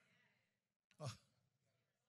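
Near silence, broken about a second in by one short breath or sigh from a man into a close handheld microphone.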